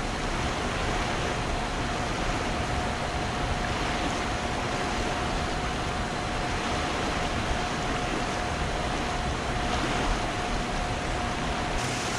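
Fast, high river water rushing below a dam: a steady, even noise with a thin steady tone running underneath. The sound changes abruptly near the end.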